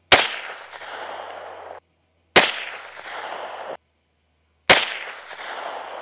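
Three shots from a Luger carbine in 7.65 mm Parabellum, fired about two and a half seconds apart, each followed by a long echo.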